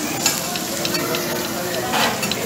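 Food sizzling on a teppanyaki steel griddle while two metal spatulas scrape and clack against the plate, tossing chopped meat. There is a sharp clack about a quarter second in and a run of lighter clicks after it.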